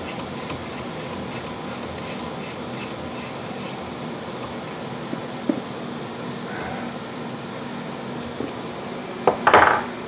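Ratchet wrench clicking evenly, about three clicks a second, as it runs the wrist pin bolt down through a Ford Model T connecting rod. The clicking stops a few seconds in. A single knock follows, and a louder clatter comes near the end.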